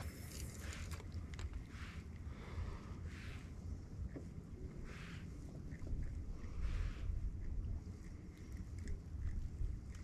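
Quiet open-water ambience: a low, steady wind rumble on the microphone with a few faint, soft hissing swells.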